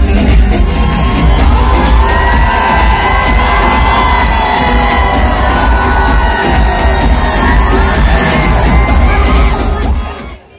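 Loud live concert music over a big outdoor sound system, with a heavy steady bass beat, and a crowd cheering and screaming over it.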